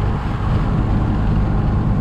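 Inside the cabin of a 1979 Alfa Romeo Alfetta 2.0 cruising at highway speed: its twin-cam four-cylinder engine gives a steady low drone, mixed with road and wind noise.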